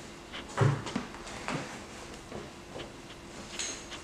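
Knife blade cutting through the wall of a plastic bucket by hand: irregular short scrapes, creaks and clicks as the blade is worked along, with a dull knock about half a second in.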